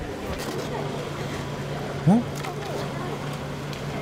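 Busy outdoor market background with a steady low hum, and a short voiced exclamation about two seconds in.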